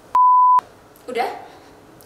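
A single steady, high bleep tone, about half a second long, edited into the soundtrack with all other sound cut out beneath it. A woman's short spoken word follows about a second in.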